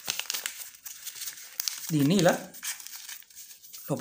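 A sheet of white paper being folded and creased by hand, crinkling and rustling with many small crackles. A brief spoken word about two seconds in is the loudest sound.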